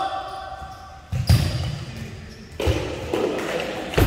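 Futsal ball struck and bouncing on a gym floor, echoing in the hall, with players' voices. There is a sharp ball hit about a second in and another past halfway.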